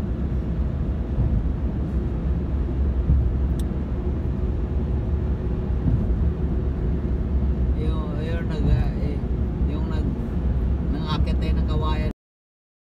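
Road noise inside a moving car on a highway: a steady low rumble from the tyres and engine, with brief voices near the end.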